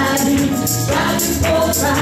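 Two men and a woman singing a gospel song in harmony into microphones, over an accompaniment with a steady beat of high jingling hits about twice a second.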